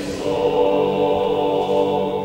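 Male vocal quartet singing unaccompanied chant in close harmony: a new chord starts near the beginning and is held steadily.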